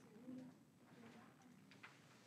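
Near silence: faint room tone with a few soft, low hums and two light clicks near the end.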